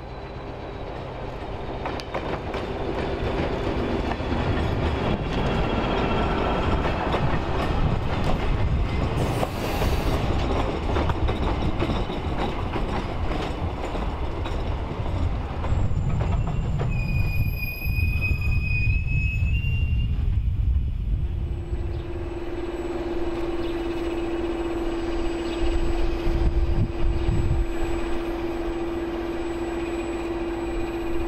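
Train running on the rails with a continuous rumble and clatter that builds over the first few seconds; high-pitched wheel squeals ring out about two-thirds of the way through, and a steady hum continues through the last third.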